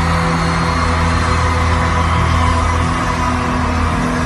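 Live band music in an arena, recorded on a phone from the crowd: loud, sustained chords over a heavy, steady bass.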